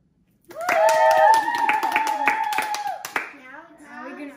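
Several voices cheering together in long, drawn-out calls while hands clap, starting suddenly about half a second in and dying away after about three seconds.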